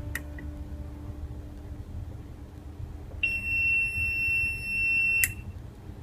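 An electronic buzzer on a fingerprint-authentication relay board sounds one steady, high beep of about two seconds, confirming that a registered fingerprint has been accepted. The beep cuts off with a sharp click as the relay switches the user's lamp on. A small click of the board's push button comes just after the start.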